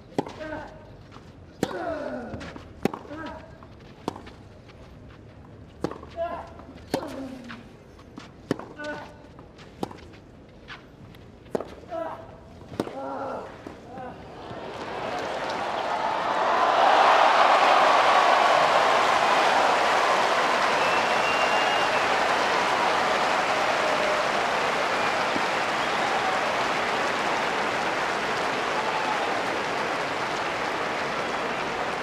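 Tennis rally on a clay court: sharp racket strikes on the ball every second or so, many with a player's grunt falling in pitch. About fifteen seconds in, crowd noise swells into loud cheering and applause that slowly fades.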